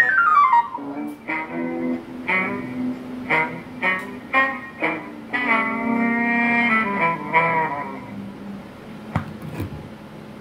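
Incoming-call tune number 6 from the caller box of a custom Galaxy DX98VHP CB radio, played through the radio's speaker. It opens with a falling whistle, runs through a quick series of short notes, and ends on a long held note about eight seconds in.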